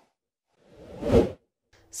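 A news-bulletin transition whoosh sound effect: one swoosh that swells from about half a second in and cuts off sharply a little after a second.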